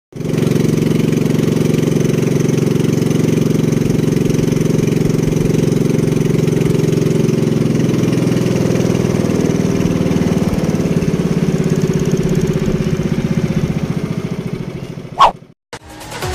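Small engine of a motorised outrigger boat running steadily as the boat moves along, then a short sharp sound and a sudden cut near the end.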